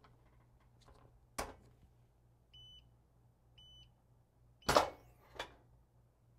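Heat press being clamped shut with a sharp click, its timer giving two short beeps about a second apart to signal the end of a brief pre-press, then the platen releasing with a louder clunk and a smaller knock as the press opens.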